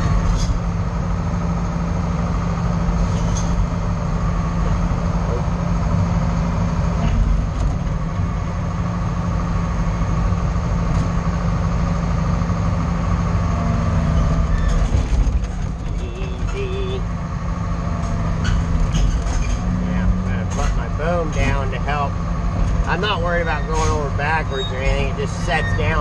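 A heavy loader's diesel engine running under load, heard from inside its cab as the machine crawls onto a lowbed trailer. The engine note shifts about midway. In the last several seconds come repeated short squeals and creaks, with a few sharp clicks.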